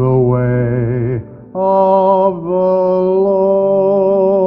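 Slow vocal music: a low voice singing held notes with vibrato, breaking off just past a second in, then a higher voice holding long, steady notes.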